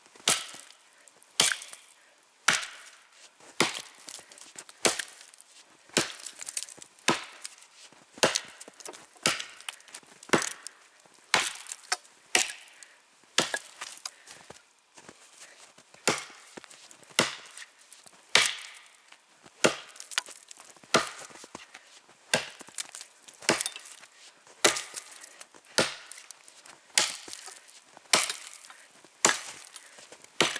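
Long-handled forged felling axe (Maral 2, 75 cm handle, 1850 g head) chopping into a standing tree trunk. The blows land at a steady, unhurried pace of about one a second.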